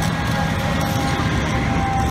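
Diesel engine of a parked fire truck idling, a steady low rumble with a constant hum.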